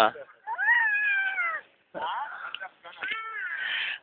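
A baby's high-pitched squeal of delight, rising and then falling over about a second, followed about three seconds in by another, shorter high squeal.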